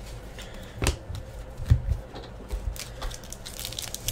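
Trading cards handled and set down on a table with a few soft knocks, then the foil wrapper of a card pack crinkling near the end as it is pulled open.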